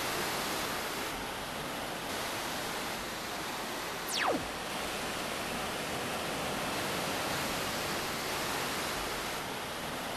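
Synthesized noise, a steady surf-like wash, with a single quick falling zap about four seconds in that sweeps from very high to low pitch.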